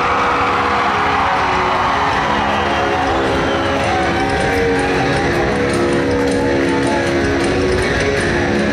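Live rock band playing loud through a concert PA, with electric guitars holding sustained chords over drums and cymbals, heard from within the crowd.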